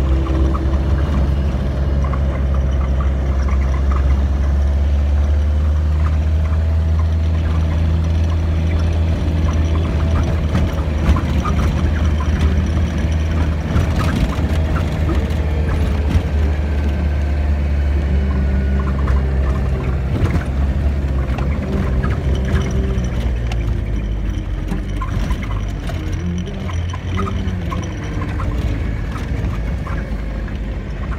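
1990 Land Rover Defender running along a rough, bumpy dirt track: a steady low engine drone with many short rattles and knocks from the jolts. The drone eases off about two-thirds of the way through.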